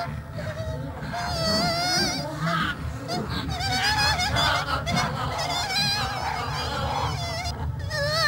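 Cartoon sound effects: several overlapping nasal, honking calls with a wobbling pitch, starting and stopping in short phrases.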